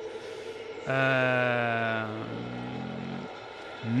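A man's long, drawn-out hesitation sound 'eh', held at one steady pitch for about a second and then trailing off more quietly until about three seconds in.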